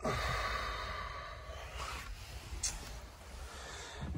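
A long breathy exhale close to the microphone, starting suddenly and fading over about two seconds, with a brief faint scuff later on.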